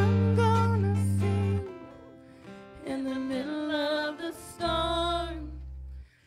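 Live praise and worship band: women singing into microphones over acoustic guitar and long-held low bass notes. The music dips briefly about two seconds in, then the singing picks up again.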